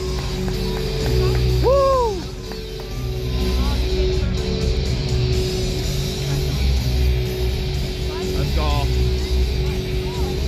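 Arena PA music with a steady pulsing bass beat over a cheering, clapping hockey crowd, with one fan's rising-and-falling whoop about two seconds in.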